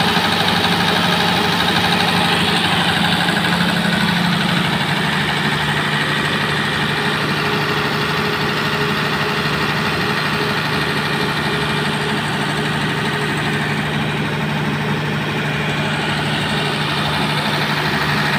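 Ashok Leyland diesel generator set running steadily, its engine hum settling slightly lower about four to five seconds in.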